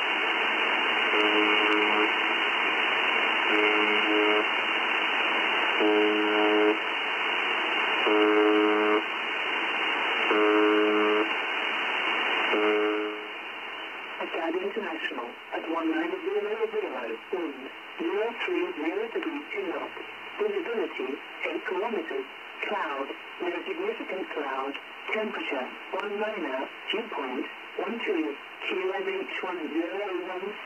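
Shortwave reception on a Malahit DSP2 SDR receiver with noise reduction off. First comes the Russian military 'Buzzer' (UVB-76) on 4625 kHz: a harsh buzz tone about a second long, repeating every two seconds or so over steady static. About 13 seconds in it changes to RAF Volmet on 5450 kHz, a voice reading aviation weather reports through lighter static.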